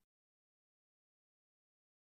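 Silence: the sound track is muted or gated to digital silence in a pause of the reading.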